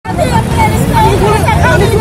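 Several people talking at once in overlapping, excited voices, over a steady low rumble.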